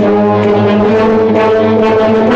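Concert band of brass and woodwinds holding a loud, sustained chord.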